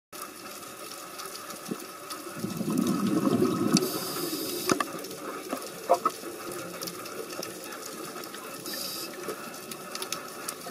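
Underwater ambience picked up through a camera housing: a steady rush of water, with a louder low rush from about two and a half to four seconds in and scattered sharp clicks.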